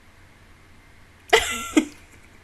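A woman's single short, explosive vocal burst close to the microphone, cough-like, about a second and a half in, ending in a second sharp catch of breath.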